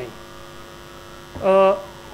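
Steady electrical mains hum, with a short held vocal 'uhh' from a man about one and a half seconds in.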